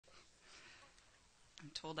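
Faint room tone, then a voice starts speaking near the end.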